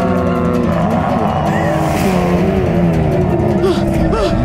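Horror-show soundtrack: long held eerie tones, then wavering voice-like sounds that bend up and down, with a short whooshing hiss about two seconds in.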